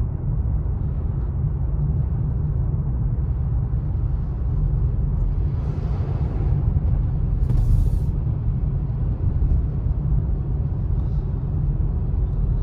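Steady low rumble of a car driving on a wet road, heard from inside the cabin. A swell of tyre hiss about six seconds in, and a brief sharp click near eight seconds.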